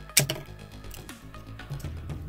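A pair of scissors snips once through a rolled paper tube, a single sharp cut just after the start, over steady background music.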